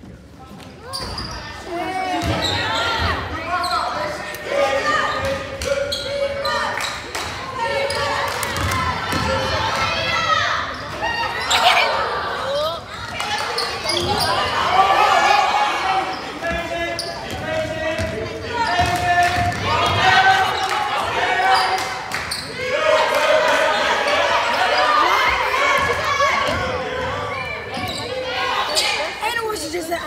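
Basketball dribbled and bouncing on a hardwood gym floor during play, with players and spectators shouting and calling out continuously, echoing in a large hall.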